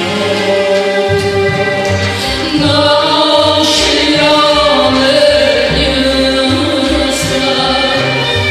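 A man and a woman singing a folk song together with a chamber string orchestra, over a bass line moving in short notes.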